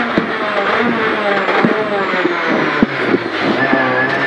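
Peugeot 208 R2 rally car's 1.6-litre four-cylinder engine, heard from inside the cabin, with revs falling under heavy braking as it is shifted down from third to first for a hairpin. Several sharp clicks come through along the way.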